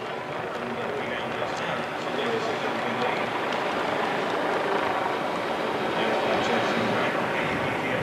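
Steady outdoor ambience picked up along a road marathon course: a wash of noise with faint voices of roadside spectators.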